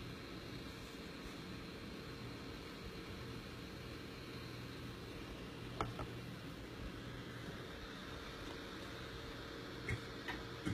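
Steady low room tone with a faint electrical hum, and one short light click about six seconds in as a smartphone is handled on its box.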